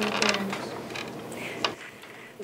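Faint scattered clicks and creaks, with a steady low hum that fades out about half a second in.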